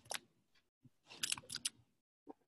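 Computer keyboard keystrokes clicking: a brief flurry at the start and another about a second in.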